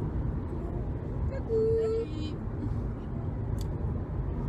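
Steady road and engine noise inside a moving car's cabin at motorway speed. About one and a half seconds in, a short held vocal note sounds for about half a second.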